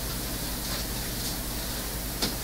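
Steady hiss and low electrical hum from the microphone and sound system, with no distinct event: the room tone of a pause in speech.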